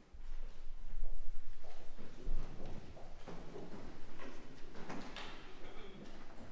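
Handling noise from a hand-held recording device being moved and turned: a low rumble with knocks and rustles, loudest about a second in, and scattered knocks and shuffling from people moving about in the room.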